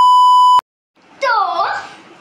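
Colour-bars test-tone beep: one steady, high beep lasting just over half a second that cuts off suddenly. It is followed by a short silence.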